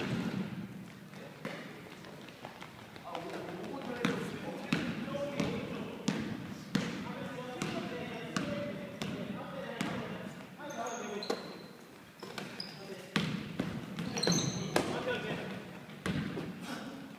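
A basketball being dribbled and bounced on a hardwood gym floor during a game, a series of sharp knocks. Brief high sneaker squeaks come near the end, with players' voices calling out.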